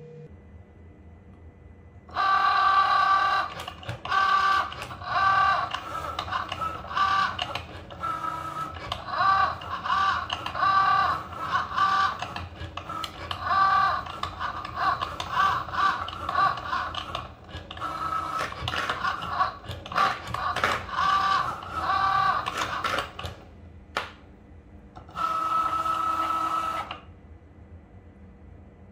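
Cricut Joy cutting machine cutting Smart Vinyl without a mat: its motors whine in short, stop-start pitched bursts as the blade carriage and rollers move the vinyl. Near the end there is one longer, steady whine.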